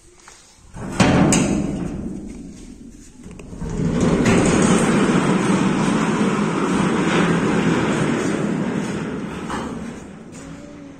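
A drop bolt on a heavy wooden door is pulled with a sharp clank about a second in, then the door is dragged open with a long, noisy scrape that fades near the end.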